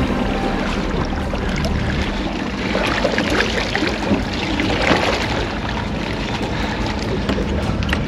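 Wind and water noise around a small aluminium boat at sea, with a low motor hum underneath and a few brief knocks near the middle.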